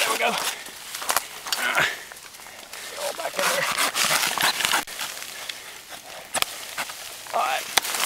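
Folding hand saw cutting through a dead fallen tree trunk: rasping back-and-forth strokes of the blade in the wood, uneven in pace, with sharp clicks and snaps.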